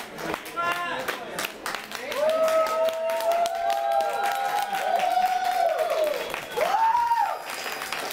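Small audience applauding with dense hand-clapping, with voices calling out over it in several long, rising-and-falling cheers through the middle and one short whoop near the end.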